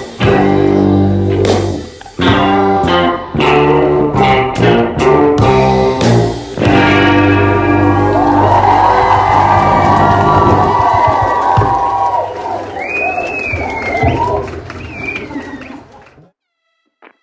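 A busking band's electric guitar and drum kit playing a rhythmic rock-reggae passage with chords and drum hits. About seven seconds in it gives way to a held, ringing chord under a crowd's cheering, with a rising and falling whistle near the end, before the sound fades out.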